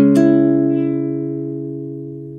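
Nylon-string classical guitar, capoed at the second fret: two quick plucked notes at the start, then the chord rings on and slowly fades.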